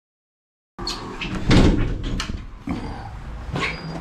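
Dead silence at first, then a metal-framed glass door being pushed open and passed through: clunks of the handle and latch and a few knocks over steady background noise, the loudest knock about a second and a half in.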